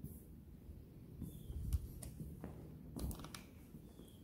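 Quiet room with faint handling noise from a handheld camera being moved: a few soft clicks and light knocks over a low rumble, the clearest about three seconds in.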